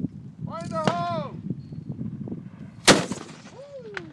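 A single cannon shot about three seconds in: one sharp, loud blast with a brief ring-out after it.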